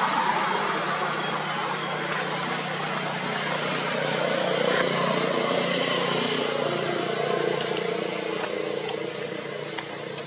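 Steady outdoor background noise of a motor vehicle running nearby, loudest at the start and slowly fading, with faint voices underneath.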